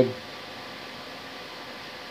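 Steady, even background hiss of a quiet room, with no clicks or meter beeps.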